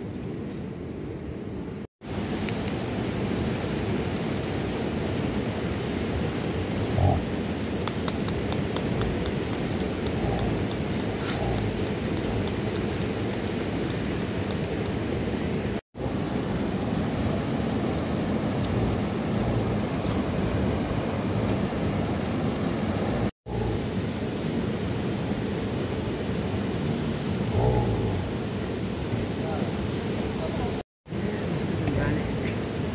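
Steady rushing noise of water, full and low, with a brief louder knock about seven seconds in and another near the end.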